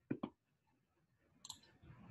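Two quick computer clicks close together at the start, then a single faint click about one and a half seconds in, as files are switched in a code editor.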